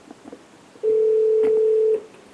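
A steady single-pitched telephone line tone, about a second long, as a phone call is being connected, with a few faint clicks before it.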